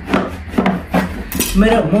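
Knife blade stabbing and scraping at a blue plastic piggy bank to cut it open: a quick run of sharp scraping strokes for about a second and a half, then a man starts talking near the end.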